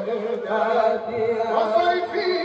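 Men chanting an Islamic zikr (dhikr) into handheld microphones, in long, sustained melodic lines.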